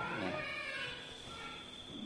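A faint animal cry over low room noise.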